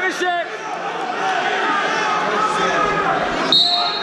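Voices calling and chattering across a gym. About three and a half seconds in, a single slap on the wrestling mat comes with a short, shrill referee's whistle blast, the signal for a fall (pin).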